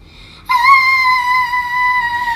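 A child's loud, high-pitched scream, starting about half a second in and held at a steady pitch, voicing the grandmother's cry of fright.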